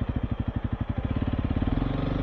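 Motorcycle engine pulling along a gravel road, its exhaust beat quickening as it accelerates and then steadying.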